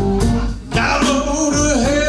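Live blues band playing: a man sings over electric guitars and a drum kit, a sung line starting about a second in after a brief dip in the sound.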